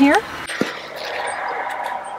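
Wind blowing: a steady rushing that slowly swells, with a single click about half a second in.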